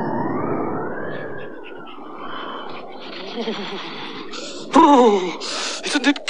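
Wind sound effect, a whooshing haze that rises and falls over the first second or so and then dies down. Near the end a puppet character's voice gives a loud groan that falls in pitch, followed by a breathy hiss: a shiver at the freezing cold.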